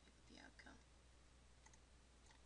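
Near silence: a low steady hum, a faint breathy murmur about half a second in, and a few faint clicks near the end.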